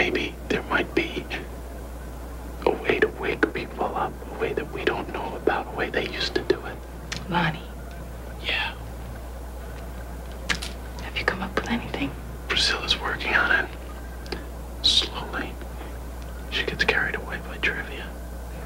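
Quiet, whispered conversation between a young man and a young woman, in short broken phrases, over a steady low hum.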